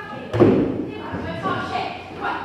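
A single heavy thump on a stage about half a second in, as one performer lunges at another seated on a bench, ringing briefly in a large hall. Voices speak around it.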